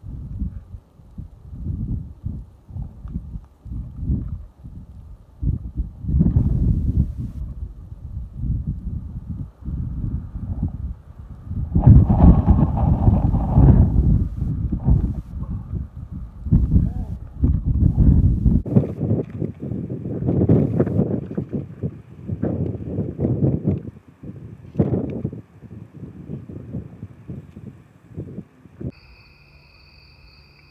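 A climber's effortful grunts and breaths in short, irregular bursts during a hard boulder problem, loudest about twelve seconds in, over wind rumbling on the microphone. A short electronic beep near the end.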